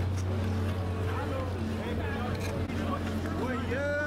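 People chattering in an open-air crowd over a steady low hum; one voice stands out clearly near the end.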